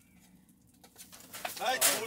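A short hush, then about a second in a man's exclamation and breathy laughter rising toward the end.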